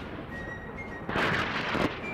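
Fighter jet engines running at high power, a steady rushing noise that swells about a second in, with a faint high whistle.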